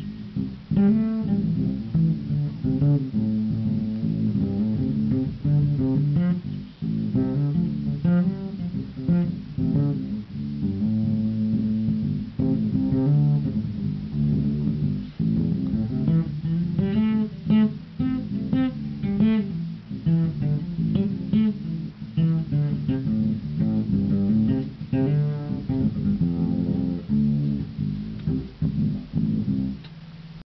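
Electric bass guitar played solo, a continuous groove of quick plucked notes.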